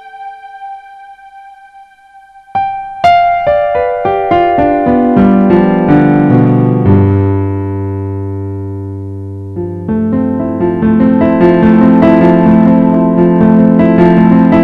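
Piano music: a held note dies away, then about two and a half seconds in a run of notes steps downward to a low sustained bass note. Near the middle it swells into a fuller passage of repeated chords.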